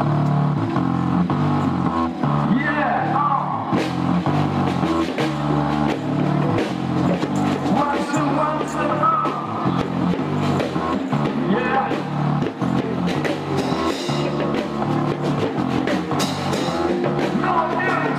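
Loud amplified band music with a bass line stepping through held notes over a steady drum beat, and a singer's voice coming in briefly near the start and again near the end.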